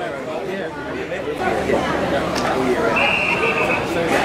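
Several people chattering at once, overlapping voices, with a short steady high-pitched tone near the end.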